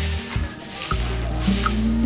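Background music with steady bass notes, over the repeated swish of a short straw broom sweeping a dusty dirt yard.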